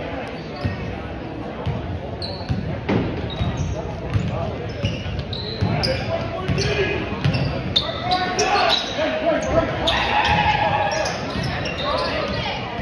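A basketball being dribbled on a hardwood gym court, with short, high sneaker squeaks and spectators' voices echoing through the large gym.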